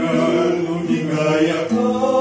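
Male vocal quartet singing a slow song in close harmony, holding long notes together and moving to a new chord near the end.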